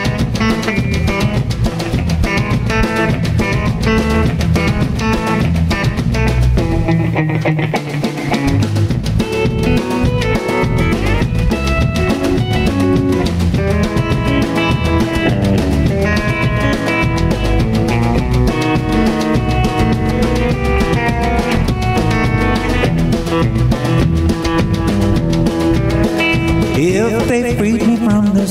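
Live band instrumental break: a Telecaster-style electric guitar picks a lead solo over electric bass and a drum kit keeping a steady beat, with a brief drop in the low end about seven seconds in.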